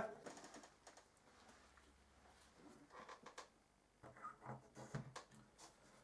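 Near silence, with a few faint clicks and taps from a bicycle rear wheel being handled and set on a board.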